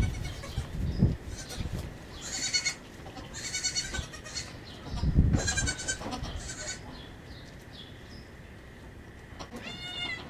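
Young goat kids bleating: a string of short, high-pitched bleats through the middle. Low thumps and rustling come in between, with one more bleat near the end.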